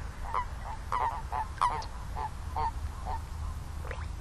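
A chorus of common toads calling: short croaks, about three a second, overlapping from several toads, the loudest about a second and a half in. A steady low rumble lies under the calls.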